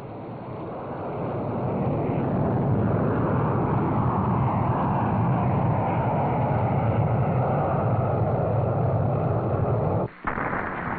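Solid-fuel rocket motor of an extended-range Polaris missile firing as it lifts off from a ship and climbs: a dense rushing noise that builds over the first two to three seconds and then holds steady.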